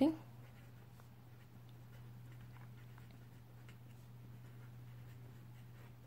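Faint scratching of a black marker writing words on paper, in short, scattered strokes.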